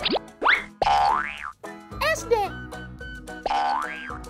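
Cartoon sound effects: four quick rising pitch sweeps, two close together at the start, a slower one about a second in, and another near the end. They play over light children's background music.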